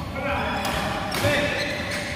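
Indoor badminton rally: racket strikes on a shuttlecock and players' shoes scuffing and stepping on the court mat, with players' voices around the hall.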